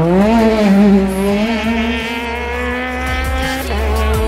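Peugeot 208 rally car engine revving hard: the pitch climbs steeply at the start, then holds high under full acceleration. The sound changes abruptly near the end, with background music underneath throughout.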